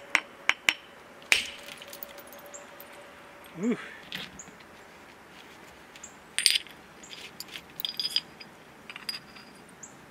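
Large copper-capped billet (a 'mega bopper') striking the platform on a thick flint biface: several sharp clicks in the first second and a half, the loudest about a second in, as a big thinning flake is knocked off. Later come lighter clicks and clinks of the stone pieces being handled.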